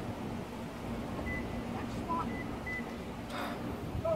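Three faint, short high-pitched electronic beeps about a second apart from an SUV as its rear hatch is unlocked with the key, over a steady low hum.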